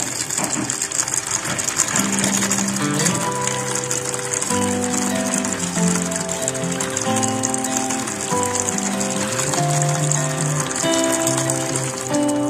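Background music playing over a thin stream of water pouring into a basin, a steady splashing hiss throughout.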